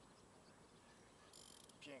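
Near silence, then about a second and a half in a brief, high ratcheting buzz from a fishing reel, lasting under half a second, while a hooked zander is being played.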